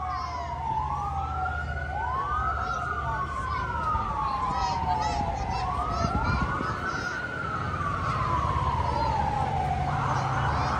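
Fire engine siren wailing over and over, each cycle rising quickly and then falling off slowly, about every two to three seconds, over the low rumble of the truck's engine.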